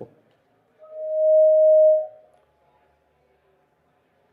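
A single pure, steady whistle-like tone that swells up, holds for about a second and fades away, typical of brief feedback ringing through a PA system's microphone.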